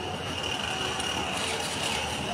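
Street traffic noise with a car approaching on the street, over a steady high-pitched whine.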